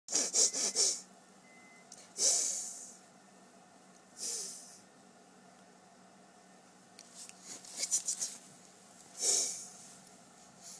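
A baby's short breathy snorts through the nose, several quick ones at the start, single ones a couple of seconds apart, a quick run of them about seven seconds in and one more near the end.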